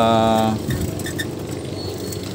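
A man's voice holding a drawn-out word, then a steady background hum with a few faint light clicks about a second in.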